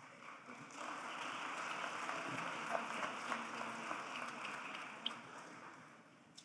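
Audience applauding, swelling in about a second in and fading away near the end.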